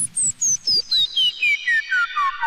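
Behringer Neutron analog synthesizer sounding rapid short bleeps, about four a second, each pitched a step lower than the one before, so the series slides down from a very high whistle to a middling tone. A low throbbing pulse fades out in the first half second.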